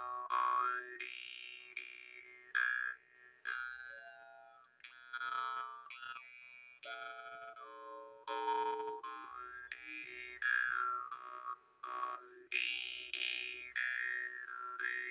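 Handmade steel jaw harp (Ukrainian dryamba) being played. The reed is plucked about once a second over a steady drone, each pluck ringing and fading, while the overtones sweep up and down as the player's mouth shape changes.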